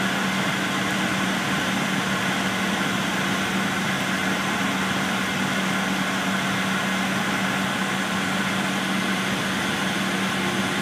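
Steady cabin noise inside a 2006 MCI D4500CL coach bus under way: an even wash of engine and road noise with a steady low hum.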